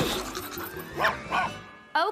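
Cartoon dog barking twice, about a second in, over background music, after a short burst of noise at the start.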